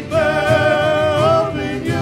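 Worship band music: voices singing in harmony over acoustic guitars, one voice holding a long note with vibrato for about a second and a half before moving to the next note.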